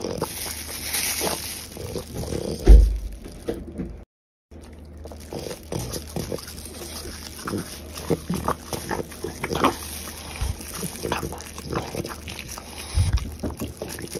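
French bulldog chewing and licking at a cooked octopus tentacle: irregular wet chewing and smacking sounds. There is one loud low thump a little under three seconds in and a brief gap of silence about four seconds in.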